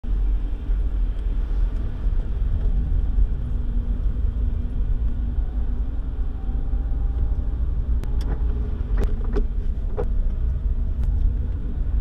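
Steady low rumble of a car driving along a wet road, engine and tyre noise heard from inside the cabin. A few light clicks come about two-thirds of the way through.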